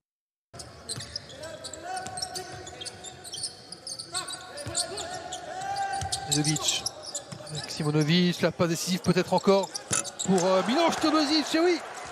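Live basketball game sound: a ball bounced on a hardwood court amid arena noise, with a TV commentator talking over it in the second half.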